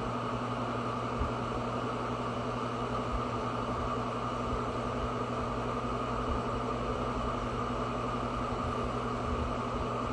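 Steady mechanical hum with an even hiss, holding the same level throughout.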